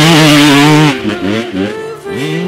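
Dirt bike engine held at high revs, then the throttle closes about a second in and the revs drop and pick up again in short falling and rising blips.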